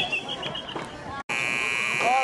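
Stadium scoreboard buzzer sounding a steady, harsh tone that starts suddenly a little past halfway, after a brief dropout, and holds to the end.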